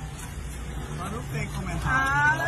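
A few faint, brief voices over a steady low hum of arcade machines.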